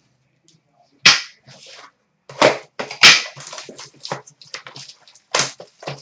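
Clear plastic shrink-wrap being torn off a sealed box of trading cards: several sharp snaps, the loudest about a second, two and a half and three seconds in, with crinkling and rustling of plastic and cardboard between them.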